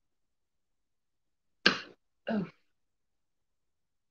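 A woman clearing her throat in two short bursts about half a second apart, the first sharp and the louder, against dead silence.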